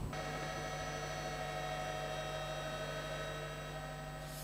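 Steady electrical hum: a low buzz with a stack of fainter steady tones above it, unchanging throughout.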